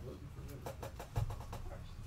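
Cardboard trading cards being handled and shuffled close to the microphone: a quick run of light clicks and rustles, with a soft thump about a second in.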